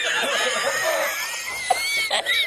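A man laughing hard and without pause in a high, strained voice: an edited-in laughing meme clip.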